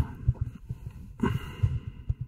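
A man's breath close to the microphone a little over a second in, amid soft, irregular low thuds.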